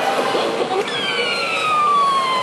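Claw machine's electronic tone sliding steadily down in pitch for almost two seconds, starting about a second in, over the general din of an arcade.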